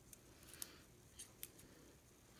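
Near silence with a few faint, short clicks: a thin metal Framelits die and a small hand tool handled as die-cut paper straws are poked free of the dies.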